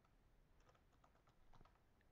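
Very faint typing on a computer keyboard: a scattering of light, irregular keystroke clicks.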